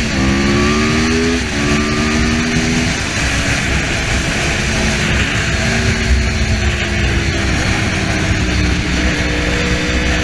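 Yamaha YZF-R1 sportbike's inline-four engine accelerating hard. Its pitch rises and drops at quick upshifts about a second and a half and three seconds in, then climbs more slowly, under loud, steady wind noise.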